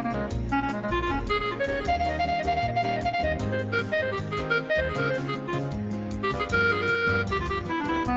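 Bossa nova jazz with a clarinet playing a fast solo of running notes, with a couple of longer held notes, over guitar and bass accompaniment.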